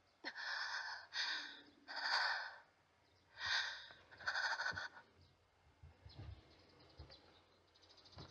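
A young woman's heavy, ragged breathing: five quick breaths of about half a second each, then faint quieter sounds. It is the panting of someone jolted awake from a recurring nightmare.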